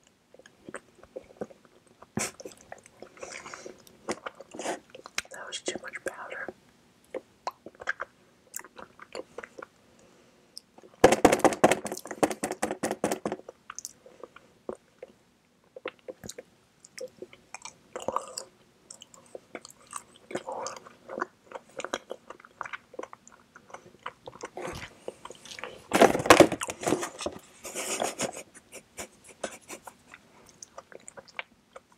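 Close-miked chewing of mini mango mochi ice cream: soft, wet, sticky mouth sounds with small clicks and lip smacks, twice growing louder and denser for a couple of seconds.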